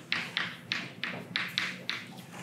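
Chalk writing on a chalkboard: about seven short, sharp taps and strokes of the chalk against the board, roughly three a second.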